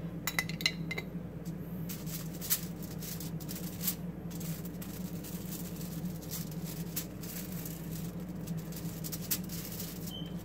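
Metal spoon clinking and scraping against a foil-lined tray while spreading sauce, with short irregular clicks throughout. A steady low hum runs underneath.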